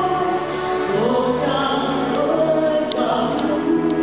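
Choir singing a slow passage in parts, holding chords that move to new notes about a second in and again near three seconds in.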